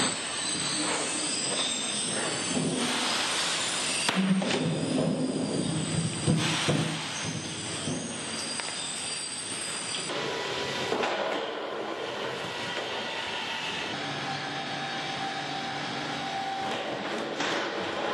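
Slaughterhouse machinery and steel fittings: a steady high metallic squealing, with a few clanks partway through.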